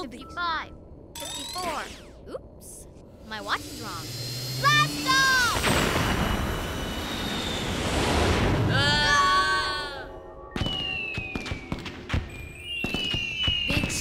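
Cartoon rocket-launch sound effect: a rushing roar that swells from about five seconds in and dies away around ten seconds. Characters' wordless yells come just before and after it, and near the end there are two falling whistle tones.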